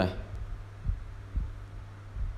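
A steady low hum with two short, dull low thumps, one about a second in and another half a second later.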